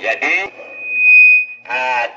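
A single high, steady whistle of megaphone feedback that swells for about a second and then cuts off, between snatches of amplified voice.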